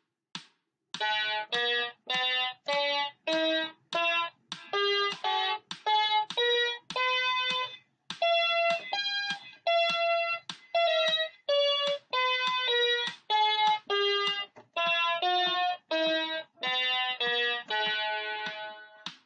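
An MQ-6106 electronic keyboard played one note at a time through an A harmonic minor scale exercise, climbing and descending at about two notes a second, with a brief pause about eight seconds in. A few short count-in clicks come just before the first note.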